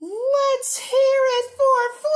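A child's high voice singing a short tune in held, sliding notes with brief breaks.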